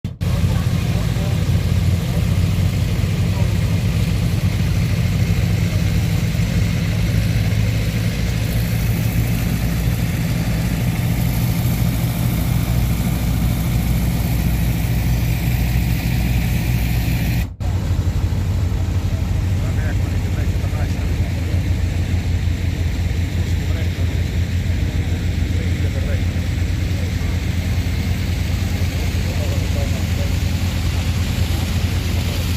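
Engine-driven flood pumps running steadily, a low even hum, with water gushing from their discharge.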